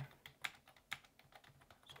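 Computer keyboard typing: a quick, uneven run of faint keystrokes.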